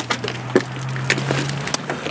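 A man holds a low, steady hesitation hum, about a second and a half long, with a few small clicks and knocks over it.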